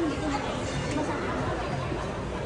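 Indistinct chatter of many people's voices in a busy shop, steady throughout, with no one voice standing out.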